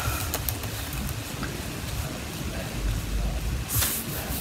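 Brush dabbing gel onto linen fabric: soft, scratchy strokes over a low rumble, with one brief, louder rustle just before the end.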